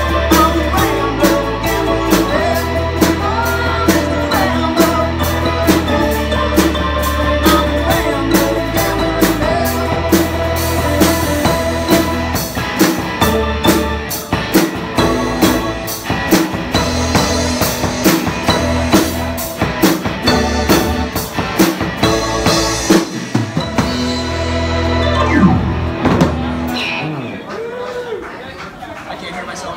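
Live rock band playing with electric guitar, keyboard and drum kit over a steady beat. The song winds up to a final chord and ends in the last few seconds.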